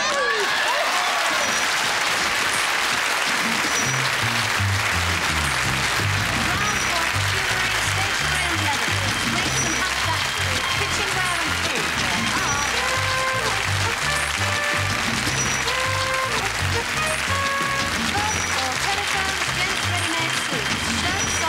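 Studio audience applause over lively music with a steady, stepping bass line.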